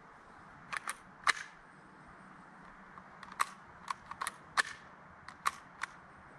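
ST-23 non-blowback gas airsoft pistol being handled and turned over, its parts giving about ten sharp clicks at irregular intervals.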